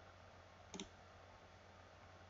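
Near silence with a faint steady low hum, broken once, about three quarters of a second in, by a single short computer click.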